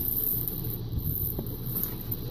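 Steady low room hum with one faint click about one and a half seconds in, as small things are handled off to the side.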